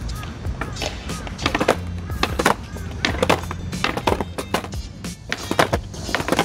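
Skateboards clacking on concrete: a string of sharp, irregular knocks as tails are popped against the ground and boards land, during ollie practice. Background music with a steady low bass runs underneath.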